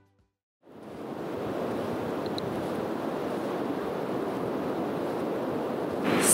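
Sea surf washing steadily onto a sandy beach, fading in from silence about half a second in.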